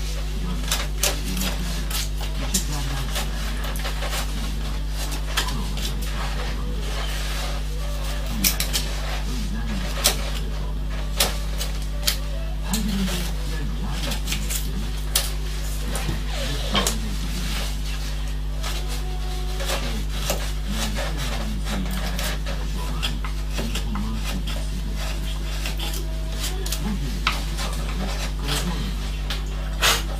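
Hand carving chisel cutting into a wooden board: irregular sharp clicks and scrapes as the blade slices out chips, with occasional knocks as tools are set down on the bench, over a steady electrical hum.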